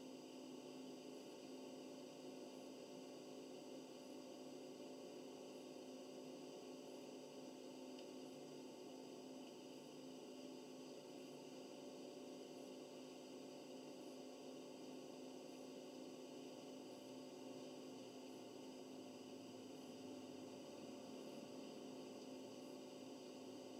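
Near silence: room tone with a steady, unchanging hum.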